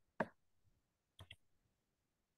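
A few sharp clicks against quiet room tone: one loud click just after the start, then a quick pair of softer clicks about a second later.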